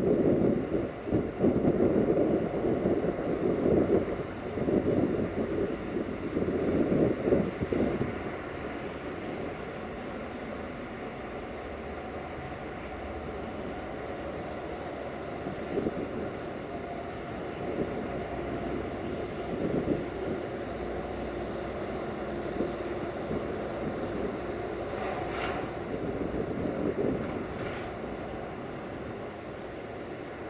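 Wind buffeting the microphone in gusts for the first eight seconds, then a steady low rumble from an approaching freight train hauled by an MTU-engined 060-DA (LDE2700) diesel locomotive. Two short sharp clicks sound near the end.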